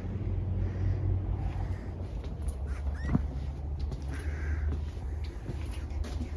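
Footsteps and light knocks of someone walking through a large warehouse over a steady low hum, with a sharp click and a short rising squeak about three seconds in.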